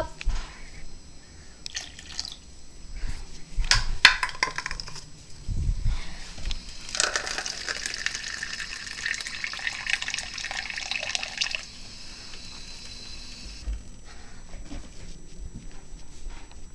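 A few knocks of handling, then a kitchen faucet runs water into a small paper cup for about six seconds and shuts off.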